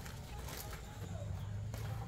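Faint rustling of cloth and a plastic bag as clothes are handled and unfolded, with a few soft crinkles over a low steady hum.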